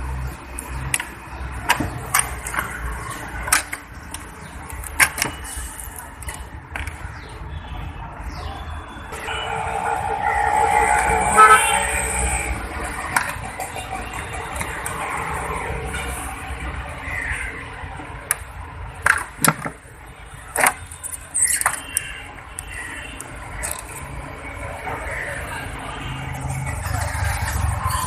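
Scattered clicks and light knocks of hand tools on engine fittings and covers as the timing cover is being taken off, over a steady low rumble, with voices in the background.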